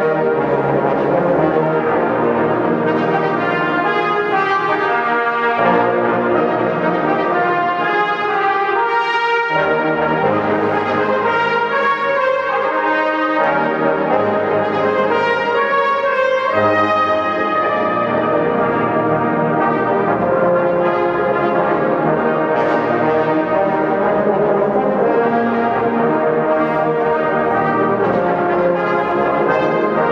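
A brass band of trombones, tubas and trumpets playing a piece together in full chords, at a steady loudness.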